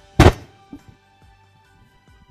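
A single loud thump about a quarter second in, over quiet background music.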